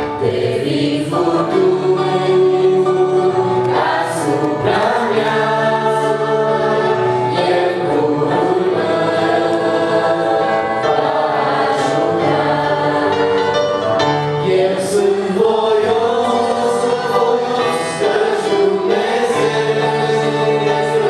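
A small mixed group of men's and women's voices singing a Christian song in Romanian, amplified through microphones, over sustained chords from a Roland EP-880 digital piano.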